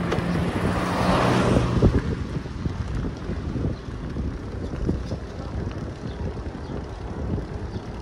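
Wind buffeting the microphone and tyre rumble from a road bike riding along a paved street, with a louder rushing swell over a low steady hum in the first two seconds, then a quieter uneven rumble.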